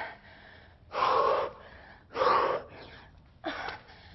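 A woman breathing hard from exertion during a set of burpees: two loud, gasping breaths about a second apart, then a shorter one near the end.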